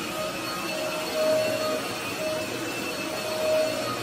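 Corded stick vacuum cleaner running on carpet, its motor whine swelling and fading as the floor head is pushed back and forth.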